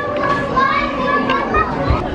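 Background chatter of children's and adults' voices, overlapping with no clear words.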